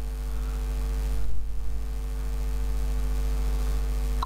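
Steady electrical mains hum picked up in the microphone recording: a constant low buzz with no other sound.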